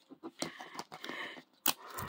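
Faint rustling and scratching of a plastic shrink-wrap sleeve on a toy capsule ball as fingernails pick at its tear edge, with a sharp click near the end.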